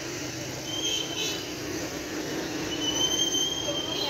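Busy street noise with a high-pitched squeal twice, a short one about a second in and a longer one held for about a second near the end.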